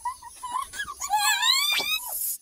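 A high-pitched voice whimpering in short bits, then breaking into a louder, wavering wail about halfway through that rises in pitch near the end.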